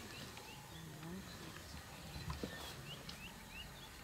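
Faint bush ambience: repeated short, high chirps from small birds, with low voices murmuring quietly and one soft crack about two and a half seconds in.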